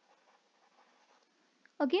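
Faint scratching of a stylus handwriting a word, followed near the end by a woman's brief spoken "Ok?".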